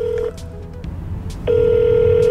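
Phone call ringback tone played over a smartphone speaker while the call rings through to a business. A short steady tone cuts off just after the start, then a longer ring of the same steady pitch begins about a second and a half in.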